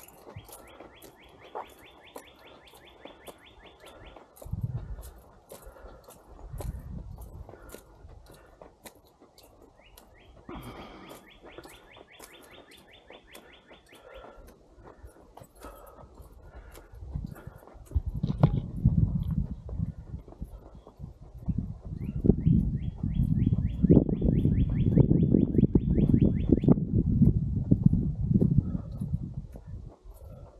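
A songbird's fast, even trill, given three times about ten seconds apart. Over the second half, a person breathes hard and loud close to the microphone, winded from walking uphill, over steady footsteps.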